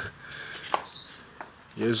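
A pause in talk with a faint, short bird chirp about a second in and a light click just before it. A man's voice starts near the end.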